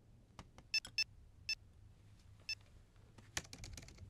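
Laptop keys and trackpad clicking: scattered single clicks, several with a short high ring to them, then a quick run of keystrokes near the end.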